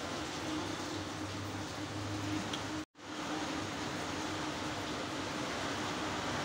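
Steady low hum and hiss of background room noise, like a running fan or appliance. It cuts out completely for an instant about three seconds in.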